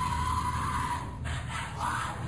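Shouting voices in a rough covert recording: one long held cry that ends about a second in, then a short shout near the end, over a steady low hum.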